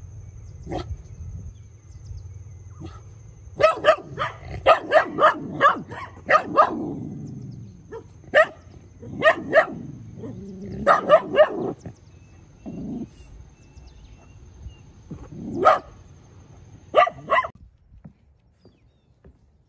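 A spaniel barking at a box turtle in short, sharp barks: a single bark, then a quick run of about ten a few seconds in, then scattered barks in ones, twos and threes.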